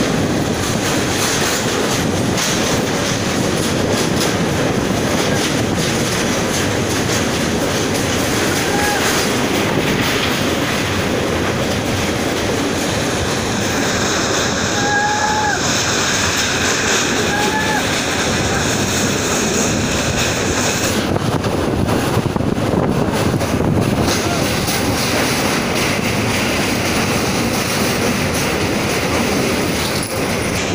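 Train running across a steel truss girder bridge: a steady rumble of wheels on rails mixed with wind noise on the microphone. A few brief high tones sound around the middle.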